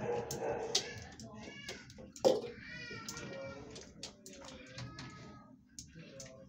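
Several high, wavering animal cries that bend and fall in pitch, with a single sharp knock a little over two seconds in.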